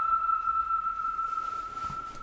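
A soprano holding the final high note of the song alone after the other voices have stopped: one steady, pure-sounding pitch that slowly fades away.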